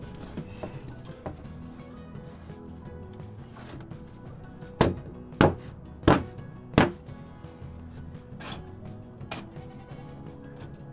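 Four sharp wooden knocks about two thirds of a second apart, a plywood board being knocked into place against a wooden pen frame, with a few lighter knocks around them, over steady background music.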